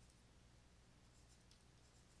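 Near silence: faint scratches of a stylus writing on a drawing tablet, over a low steady hum.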